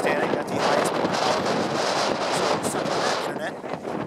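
Strong wind buffeting the camera microphone with a steady rushing roar, a man's voice partly buried beneath it.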